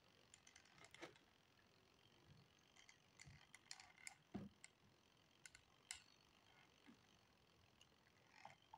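Near silence with scattered faint clicks and light knocks from a hot glue gun being handled and its trigger squeezed while gluing inside a cardboard box.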